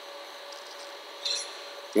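Low, steady recording hiss with a faint electrical hum and whine, broken a little past a second in by one brief, soft scraping hiss.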